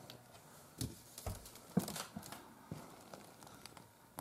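Faint rustling and crinkling with scattered sharp clicks and a dull low thump about a second in: handling noise from a handheld camera being moved slowly.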